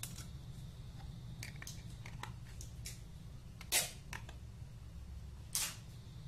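Small clicks and clatters of a metal hard-drive casing and hand tools being handled on a table, with two louder clatters about two thirds of the way in and near the end, over a steady low hum.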